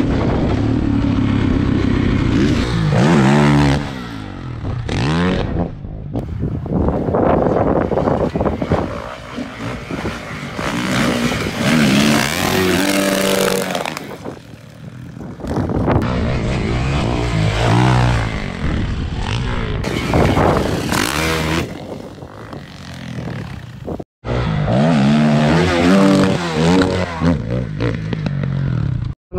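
450 four-stroke dirt bike engines revving up and down again and again while riding the trail, the pitch climbing and falling with each burst of throttle. The sound cuts out briefly about 24 seconds in.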